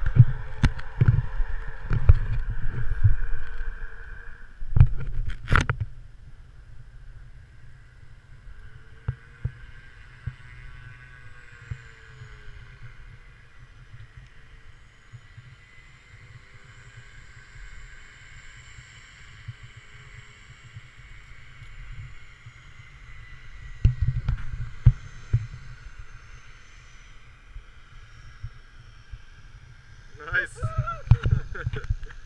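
Wind buffeting the microphone of a body-worn camera, with knocks and rustles from handling. The low rumble is strongest for the first few seconds and again a little before the end, and faint steady tones sit under a quieter middle stretch.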